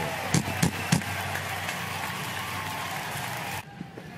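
Baseball stadium crowd noise, a steady wash of many voices, with a few sharp knocks in the first second. It cuts off abruptly shortly before the end.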